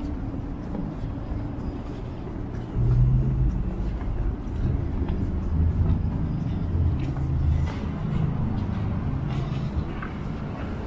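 City street traffic: motor vehicles running close by as a low, steady rumble that grows louder about three seconds in.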